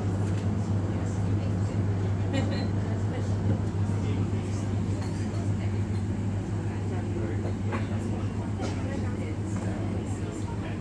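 Busy café ambience: indistinct chatter of customers over a steady low hum, with a few light clicks and clinks.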